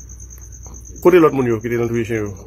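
A man's voice speaking from about a second in, over a steady high-pitched chirping that pulses several times a second.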